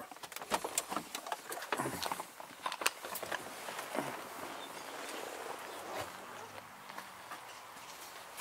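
Handling noise from a hand-held camera being carried out of a truck cab: a quick run of clicks and knocks over the first few seconds, then a quieter steady hiss.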